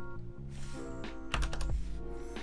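A few computer keyboard keystrokes about one and a half seconds in, over background music of soft held chords.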